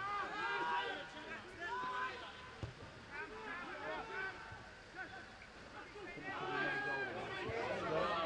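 Players' shouts and calls carrying across an outdoor football pitch during play. They are distant, with no clear words, and come thickest near the start and again toward the end.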